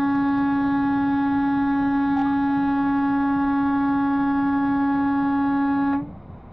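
A truck's horn held in one long, loud blast at a single steady pitch, cutting off suddenly near the end.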